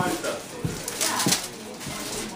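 Footsteps of heeled ankle boots on a hard floor, three steps about two-thirds of a second apart, under low talking.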